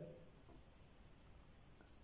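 Faint sound of a marker pen writing on a board.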